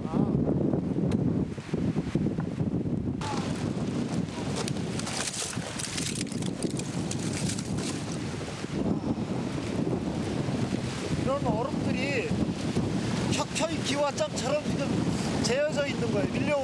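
Strong wind gusting across the microphone, with a bright hiss joining about three seconds in.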